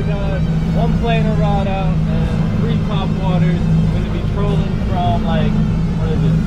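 Boat's outboard motor running steadily under way while trolling, a low even drone under a man's voice.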